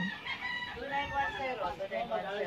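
A rooster crowing once, one long drawn-out call, with faint voices behind it.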